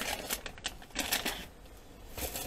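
Clear plastic bag crinkling and rustling as it is handled and lifted away, in a quick run of sharp crackles that fades out after about a second.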